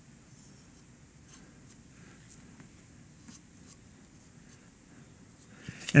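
Faint, scattered scratching and rubbing of a gloved hand working on a bike stem's clamp face, spreading carbon fiber assembly paste.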